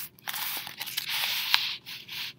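A paper page of a hardcover picture book being turned by hand: a rustling, scraping swish with a sharp click about one and a half seconds in.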